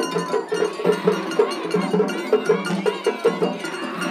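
Edo-style festival hayashi played on a dashi float: shime-daiko drums beaten in a fast, steady rhythm of about four strokes a second, with bright metallic strikes from a small hand gong and a held flute note near the start.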